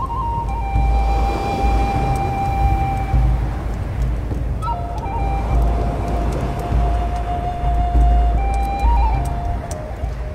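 Slow ambient music of long held notes that step slowly in pitch, over a deep, swelling rumble and a rushing wash of volcano and ocean-surf ambience.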